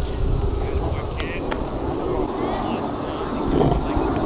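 Steady low outdoor rumble with faint voices in the distance.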